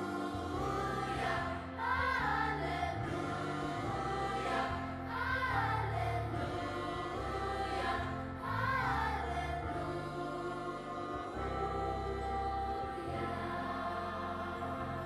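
Children's choir and adult voices singing a gospel song together over an accompaniment with a low bass line. The sung phrases rise and fall through the first nine seconds or so, then give way to held chords.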